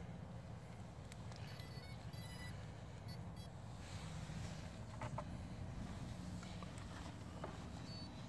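Faint low wind rumble on the microphone, with a quick string of small electronic beeps from the FPV gear between about one and a half and three and a half seconds in, and a few light clicks as the gear is handled.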